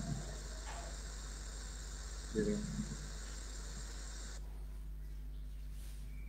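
Steady electronic hiss of an open microphone on an online video call, over a constant low mains hum. The hiss cuts off suddenly a little over four seconds in. A voice briefly says a word or two about two and a half seconds in.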